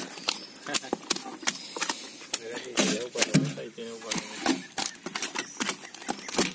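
A freshly caught palometa flopping in the bottom of a boat: quick, irregular slaps and knocks as its body hits a cap and the boat's floor.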